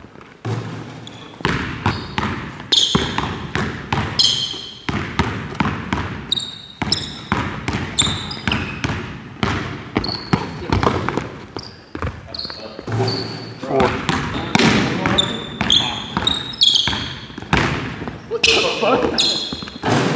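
A basketball bouncing on a hardwood gym floor during play, with repeated short high sneaker squeaks as players cut and plant their feet.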